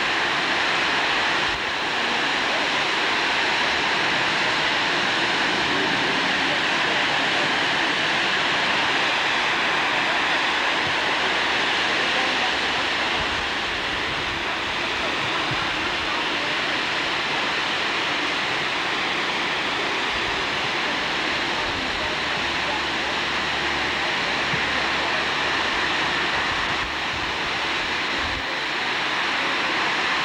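Steady rushing of water churning against a lake freighter's steel hull as it sits in a lock, with a low rumble joining in about two-thirds of the way through.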